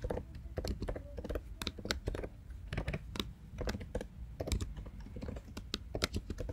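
Typing on a computer keyboard: quick, irregular key clicks, several a second.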